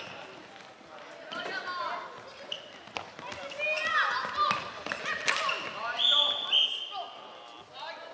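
Floorball play in a sports hall: sneakers squeaking on the court floor, sharp clacks of sticks striking the plastic ball, and players' shouts, with a steady high tone about six seconds in.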